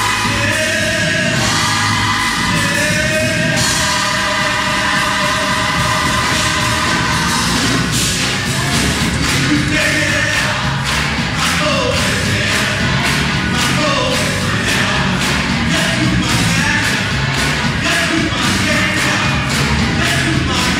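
Gospel choir singing with a band, the many voices moving together over drums that keep a steady beat, which grows more prominent about halfway through.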